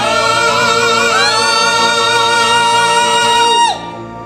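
Several voices sing a held final chord in operatic-style harmony with vibrato. One voice slides up to a higher note about a second in, and all of them cut off together just before the end.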